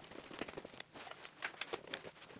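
Irregular small clicks and taps of wiring work in a distribution board: stiff insulated wires handled and pushed into a plastic terminal block, with an insulated screwdriver working the terminal screws.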